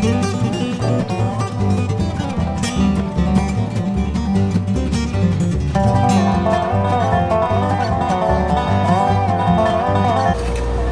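Background dobro music: a resonator guitar played with a slide over a steady bass line, with a brighter sliding melody coming in about six seconds in.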